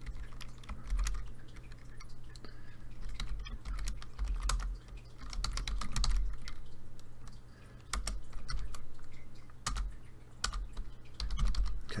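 Computer keyboard typing in irregular runs of keystrokes, over a steady low hum.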